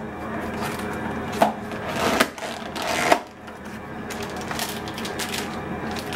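Plastic food packaging and a zip-top bag being handled on a kitchen counter: crinkling, with a few sharp taps or clicks about one and a half, two and three seconds in.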